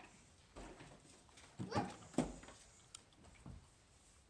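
A few short wordless voice sounds from a person, emotional reactions rising and falling in pitch, about halfway through, followed by a couple of faint knocks.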